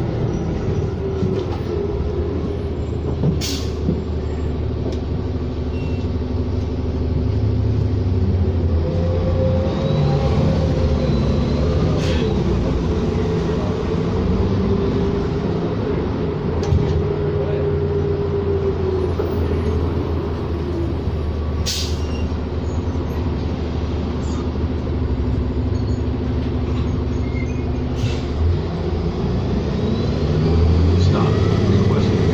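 Cabin sound of a 2007 New Flyer D40LFR diesel city bus under way: a steady drone of engine and road rumble, with the engine note drifting up and down. Four sharp clicks or rattles are spaced through it.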